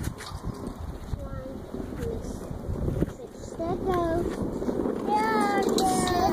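Small plastic wheels of a child's three-wheeled kick scooter rolling and rattling over rough asphalt, with a toddler's short, high vocal sounds about a second in, around four seconds in and near the end. Wind is on the microphone.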